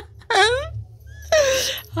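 A high-pitched human voice giving a short wail-like cry whose pitch falls, then a breathy laugh near the end.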